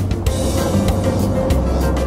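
Food processor motor running under load, its blade grinding nuts, dates and coconut flour into a crumbly mixture: a dense whirring with a steady hum, setting in about a quarter second in. Background music plays along with it.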